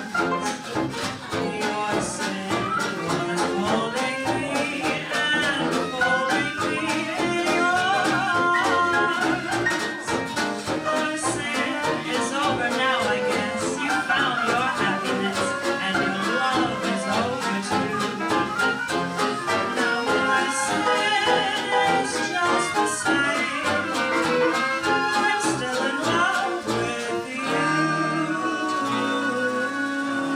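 Small classic-jazz band playing a late-1920s-style song live, with a female vocalist singing over the band.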